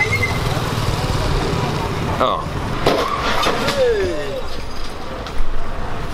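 Street traffic with a road collision: a sudden crash about two seconds in, then a few more knocks and clatters.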